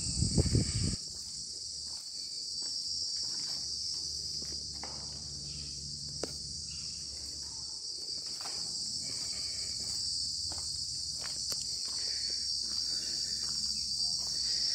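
Steady high-pitched drone of insects, with scattered soft footsteps on a brick path and a brief low rumble in the first second.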